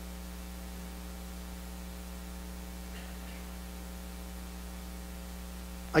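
Steady electrical mains hum with a buzz and a faint hiss, unchanging throughout.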